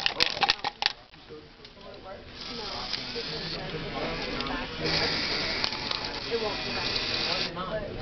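Small electric motors of a Fischertechnik materials sorter running with a steady high whir that starts about two seconds in and grows louder for a couple of seconds in the middle, after a few sharp clicks at the start.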